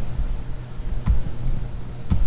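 Background noise in a pause between words: a steady low hum with dull low thumps about once a second, and faint high chirping throughout.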